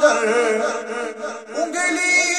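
A man singing an Urdu devotional manqabat in the naat style. His voice moves through long, wavering held notes, with a short dip in level about one and a half seconds in.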